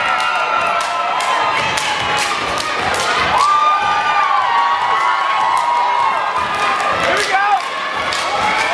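Step team stomping and clapping on a wooden stage: a run of sharp hits, several to the second, over a crowd cheering and shouting.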